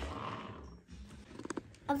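A young child's growling, roaring noise, like a pretend truck engine, fading out over the first second. A child's voice starts speaking right at the end.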